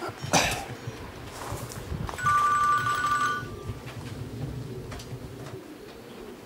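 An electronic beep: a steady two-note tone, held for a little over a second, starting about two seconds in. A short knock sounds just before it.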